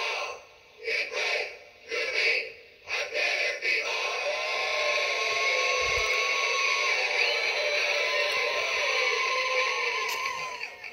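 Gemmy animated mascot bobblehead playing its built-in song through its small speaker, with sung vocals. It starts as short bursts about once a second, then runs on as a continuous tune from about four seconds in.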